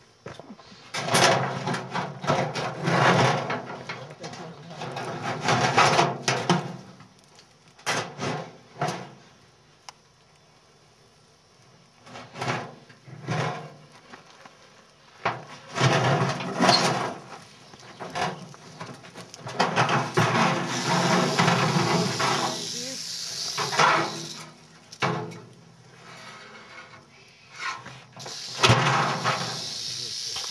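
Rattlesnake rattling in stretches of steady buzzing, with muffled voices in between.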